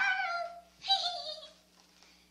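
A girl's voice making two high-pitched, wordless cries, each falling in pitch: one at the start and another about a second in.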